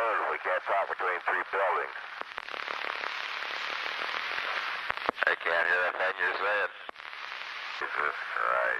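Archival Apollo 1 capsule-to-ground radio transmission: a man's voice over a narrow, hissy radio channel in two short stretches, at the start and again about five seconds in, with steady static between.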